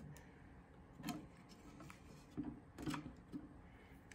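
Faint handling noise from a wooden frame rack being lifted out of a wooden box: a few light clicks and knocks, about a second in and again two and a half to three and a half seconds in.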